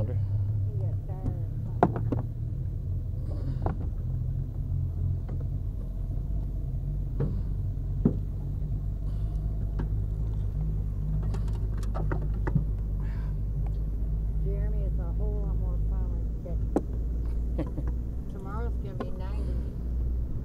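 Boat motor idling steadily, a low even hum, with a few sharp knocks as a hooked catfish is handled and unhooked on the boat's deck.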